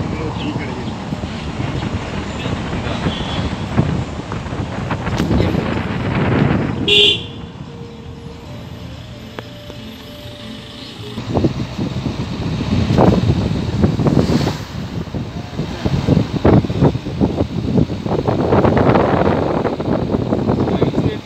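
Road and wind noise in a moving car, loud and gusty, easing for a few seconds in the middle before rising again. A short vehicle horn toot sounds about seven seconds in.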